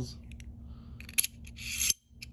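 Titanium gravity knife being closed, its double-edged blade sliding back into the handle with a metallic scrape. There is a sharp click about a second in and another just before the end.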